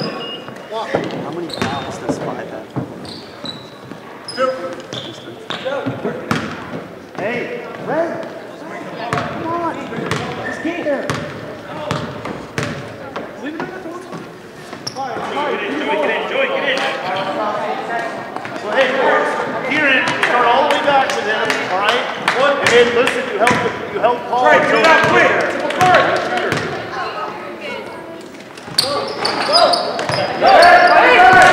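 A basketball bouncing on a hardwood gym floor, with sharp repeated thuds, amid the chatter of spectators and players echoing in the gymnasium. The voices grow louder about halfway through.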